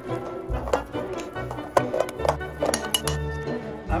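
A utensil clinking and scraping against a glass mixing bowl in irregular strokes while stirring butter and powdered sugar into frosting, over background music.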